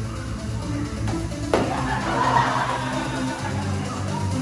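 Dance music for a competition routine, with a sudden crash about a second and a half in followed by a two-second hissing swell that fades.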